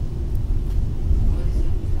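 Steady low rumble heard inside a passenger train carriage.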